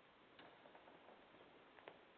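Near silence: room tone with a few faint clicks, the clearest one about a second and a half in.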